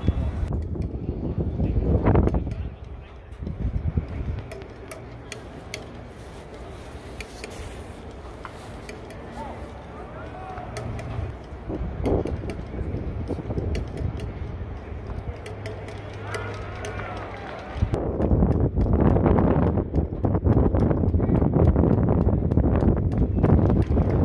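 Baseball stadium crowd: a steady murmur of the crowd, which turns into loud cheering and clapping from about eighteen seconds in, when the ball is in play.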